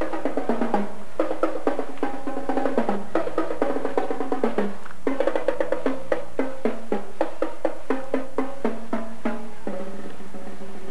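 Drum and bugle corps playing: a line of brass bugles in sustained chords over a drum line's rapid snare strokes. The drum strokes stop just before the end while the horns hold on.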